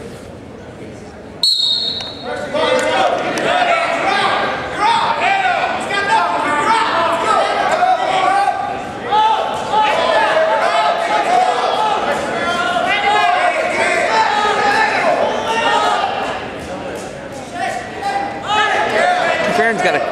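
A referee's whistle blows one short blast about a second and a half in, starting the wrestling from the down position. Then several voices shout over one another without a break as coaches and spectators yell during the wrestling, echoing in a large gym.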